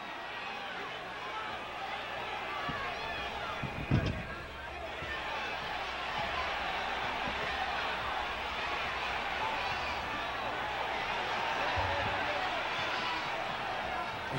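Arena crowd at a professional wrestling match, a steady din of many voices talking and calling out. A single heavy thump sounds about four seconds in, and a lighter one near the end.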